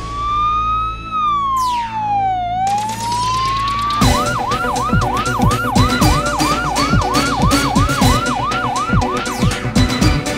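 Siren sound effect in a news programme's closing theme: a slow wail rising and falling for the first few seconds, then switching about four seconds in to a fast yelp, about three sweeps a second, over a steady beat.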